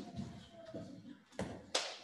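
Scattered knocks, taps and shuffles of people moving about and handling gear in an echoing hall, with two sharper knocks about a second and a half in.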